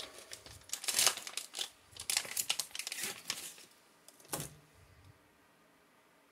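Laminated MRE food pouch being torn open and crinkled to get the wheat snack bread out: a run of papery crackles and rips over the first three seconds or so, then one sharp crackle a little after four seconds.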